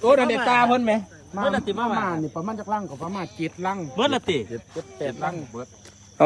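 People talking over a steady high, unbroken trill of crickets.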